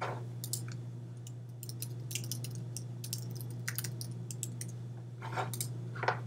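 Typing on a computer keyboard: irregular key clicks, several a second with short pauses, over a low steady hum.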